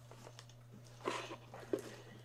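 Cardboard rustling and scraping as a boxed Funko Pop figure is pulled out of a cardboard shipping box, with a couple of louder scuffs about a second in and just before the end, over a steady low hum.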